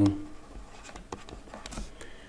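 Stylus writing by hand on a tablet screen: a few light taps and short faint scratches.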